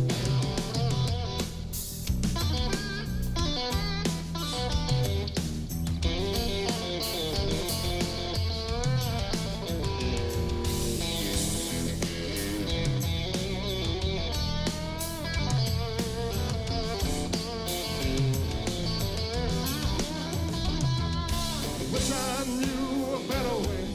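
Live electric power trio playing an instrumental break: a lead electric guitar solo with bent and wavering notes over electric bass and a drum kit.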